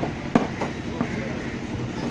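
A heavy machete-like knife chopping fish on a wooden block: three sharp chops in the first second, the first the loudest, over a steady background din.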